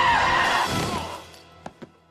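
Film soundtrack: music with a long, high, held cry that fades away about a second in, followed by a few soft knocks.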